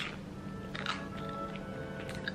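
A person chewing a bite of avocado toast with olives, with a couple of crisp crunches from the toasted bread, over quiet background music.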